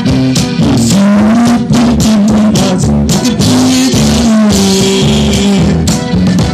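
Live band music with no words: an accordion plays the melody over electric bass, guitar and drums with a steady beat.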